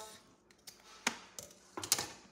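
Scissors snipping off the ends of twine: a few separate sharp clicks, with the loudest cluster near the end as the scissors are set down on a granite countertop.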